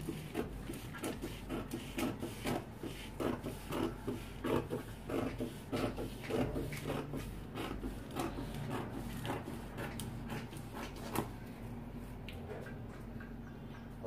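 Scissors snipping through a paper dress pattern: a run of short cuts, about two a second, that thins out and stops about eleven seconds in.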